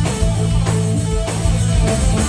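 Live rock band playing: electric guitars over a drum kit, with steady drum hits.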